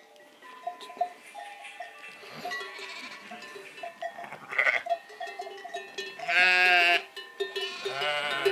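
A flock of ewes and lambs bleating as they call to find each other, with a loud, drawn-out bleat about six seconds in. Sheep bells clink throughout.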